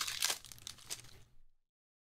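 Foil trading-card pack wrapper crinkling and tearing as it is pulled open by hand. The sound is densest at first, then fades and cuts to silence about one and a half seconds in.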